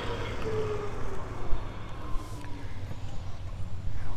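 Golf cart driving off along a paved cart path, its faint motor whine sliding slightly lower in pitch and fading as it moves away, over a steady low hum.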